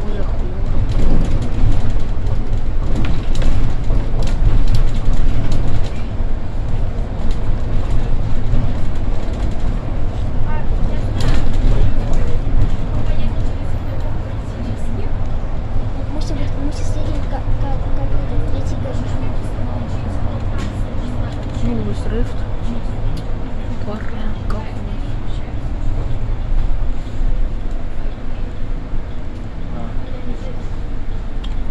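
Inside the cabin of a Solaris Urbino IV 18 articulated city bus on the move: a loud, steady low rumble of engine and road, with a faint steady whine holding from about halfway through.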